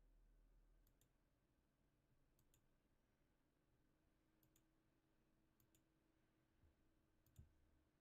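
Faint computer mouse clicks in near silence: five clicks, each a quick press-and-release double tick, one to two seconds apart.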